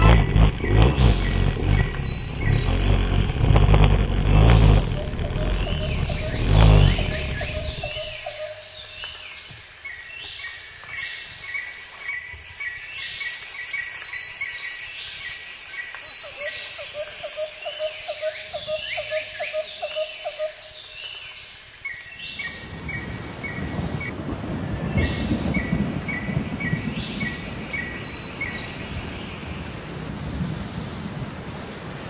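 Birds chirping and singing in short repeated phrases, over a low rumble that stops about eight seconds in; a low rushing noise comes up again after about twenty-two seconds.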